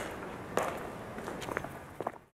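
Evenly paced footsteps, with a sharp step about every 0.6 seconds.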